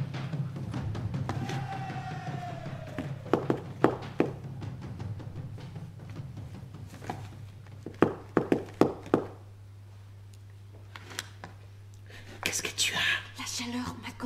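A low droning music bed that thins out about nine seconds in, with a single falling tone early on, a few sharp knocks around four and eight seconds in, and a soft whispered voice near the end.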